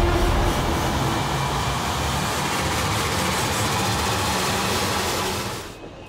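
A dramatic transition sound effect: a loud, sustained rushing rumble that follows a boom, holds steady, and cuts off suddenly near the end.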